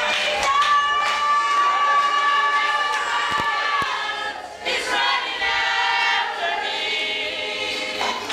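A congregation singing in worship, several voices with long held notes, one high note sustained for a few seconds near the start.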